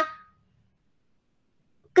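Near silence: a pause between phrases of a woman's speech, her last word trailing off at the start and her voice returning at the very end.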